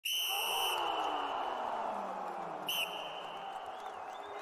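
A sports-intro sound effect: a referee-style whistle blast of under a second, then a second short blast about two and a half seconds later. Underneath runs a rushing noise with a downward glide that slowly fades.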